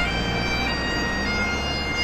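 Highland bagpipes playing long held melody notes over their steady drones. A car drives past close by, adding a low engine sound underneath.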